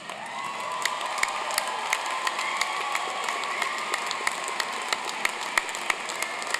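Large audience applauding, the clapping swelling in over the first half second and then holding steady.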